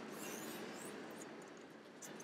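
Faint, even background hiss with no distinct sound, fading slightly quieter near the end.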